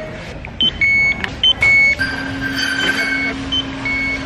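Store self-checkout and its barcode scanner beeping: a string of short high beeps about a second in, then from halfway a steadier high chime over a low, even hum.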